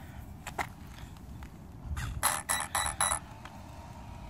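RC truck steering servo whirring in about six quick bursts past the middle, as it is worked back and forth from the transmitter. The servo spins but the horn does not turn, which the owner takes for a stripped servo horn.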